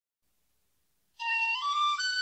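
Silence, then about a second in a flute-like melody begins, climbing in short steps: the opening of background music.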